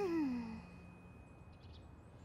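A cartoon character's short sigh, falling in pitch and trailing off within the first half second, followed by faint quiet.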